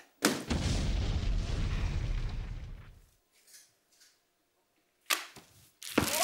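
A balloon pricked with a pin bursts with a sharp bang, followed by a deep rumbling boom that dies away over about three seconds. Two more sharp hits come near the end.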